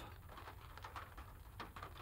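Light rain pattering faintly on a car, heard from inside the cabin: scattered soft ticks of drops.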